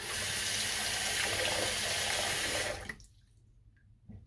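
Water running steadily from a bathroom sink tap for nearly three seconds, then shut off abruptly.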